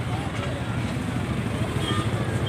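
Steady low rumble of road traffic, with faint background voices of people.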